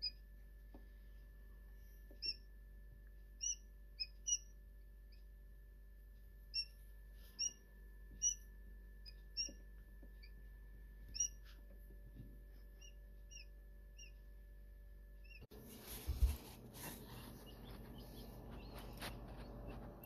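Newly hatched quail chicks peeping: short, high peeps at irregular intervals, roughly one a second, over a steady hum. About three-quarters of the way through, the peeps give way to a rustling, handling noise with a few knocks.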